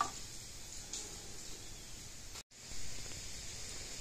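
Quiet room tone with a soft click and faint rustling as the light bar's wiring harness is handled on cardboard. There is a short total dropout to silence about two and a half seconds in.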